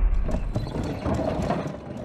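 Film soundtrack effects: a run of quick, irregular mechanical clicks over a low rumble that fades away.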